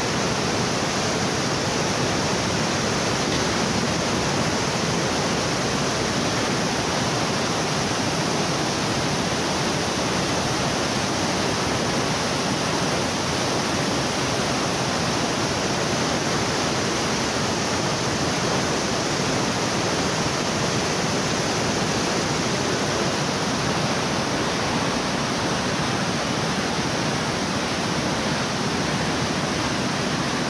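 River water pouring through a barrage and over its concrete spillway into churning white water: a steady, loud rush that holds unchanged throughout.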